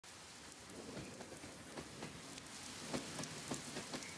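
A steady rain-like hiss with many scattered sharp ticks, fading in and growing gradually louder.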